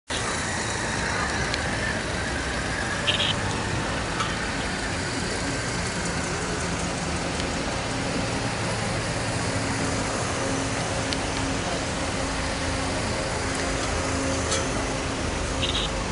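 Slow-moving ceremonial police vehicles, a sidecar motorcycle and then open-top cars, running at low speed with a steady low engine hum over a constant background noise. There are a couple of brief clicks along the way.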